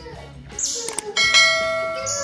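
Subscribe-button animation sound effect: a quick swoosh and mouse click about half a second in, then a bell chime that rings out and slowly fades.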